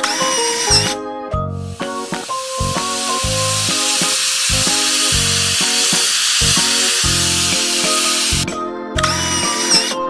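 Cartoon paint-spray sound effect: a steady hiss starting a second or two in and cutting off about seven seconds later, over cheerful keyboard background music.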